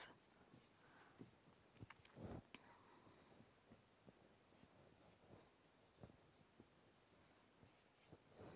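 Faint squeaks and scratches of a marker pen writing on a whiteboard, in short strokes.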